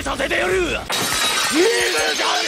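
Glass-shattering sound effect that breaks in suddenly about a second in and carries on as a bright crackling spray, over Japanese voices.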